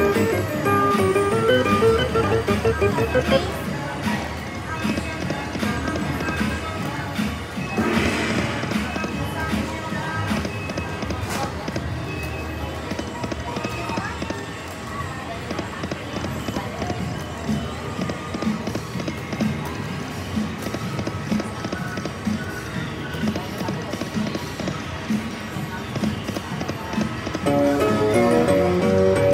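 Slot machine electronic music and reel-spin sounds, with a melodic win jingle at the start and again near the end as win credits are tallied.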